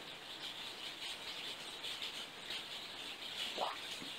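Quiet room tone: a faint steady hiss with faint high flecks of sound, and one brief soft sound about three and a half seconds in.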